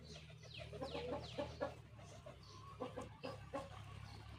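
Domestic hens clucking in two short runs of calls, with a few high falling chirps among the first run.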